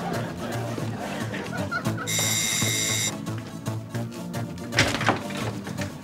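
Electric doorbell sounding one steady, high ring for about a second, about two seconds in, over muffled music. A single thump follows near five seconds in.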